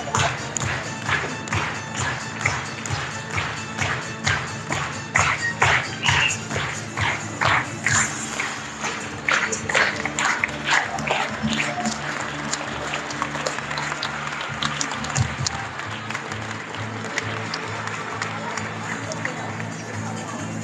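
Audience clapping in unison, about two claps a second, over music playing through the hall's sound system. The rhythmic clapping thins out about twelve seconds in, leaving the music and a murmur of crowd noise.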